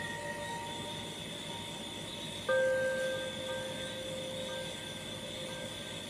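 Background music of soft, bell-like chords. One chord is fading at the start and a new one is struck about two and a half seconds in, then rings on.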